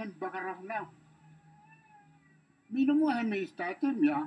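A man speaking in Pidgin, with about a second and a half of pause in the middle. During the pause a faint wavering thin tone is heard in the background.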